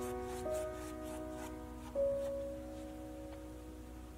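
Slow, soft piano background music: held notes fading away, with new notes struck about half a second and two seconds in.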